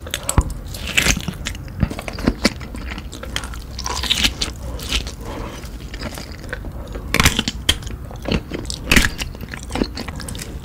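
Close-miked biting and chewing of a large sausage with its casing on: irregular crisp clicks and crackles through steady mouth sounds.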